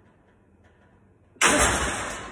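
A lifter's sharp, forceful exhale during a heavy bench press rep: a sudden loud rush of breath about one and a half seconds in, fading away over the next half second.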